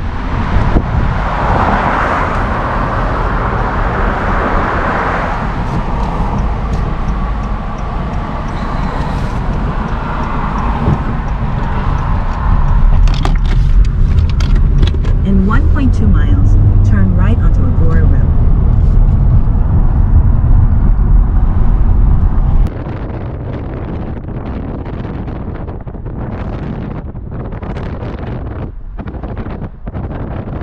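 Road noise and wind on the microphone from a moving car, with a heavier low rumble through the middle that cuts off suddenly about three quarters of the way in.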